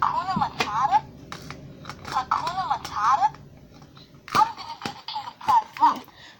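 A high-pitched voice with a fast warbling pitch comes in three short stretches. Sharp clicks and knocks from handling are heard between them.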